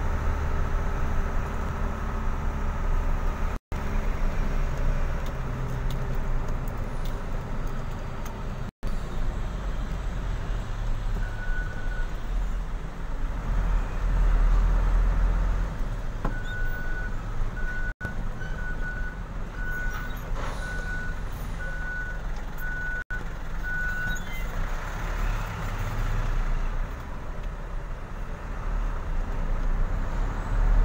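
Truck engine running steadily, heard from inside the cab as the truck rolls slowly. From about halfway through, a high electronic beeper sounds about once a second for several seconds, after one lone beep a little earlier.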